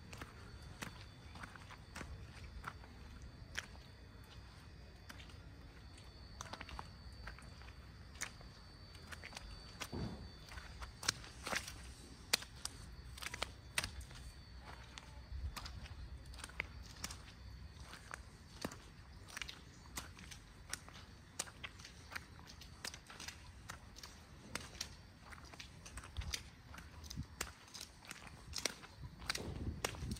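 Footsteps on a wet, slushy road: a run of faint, irregular steps and small clicks over a low rumble.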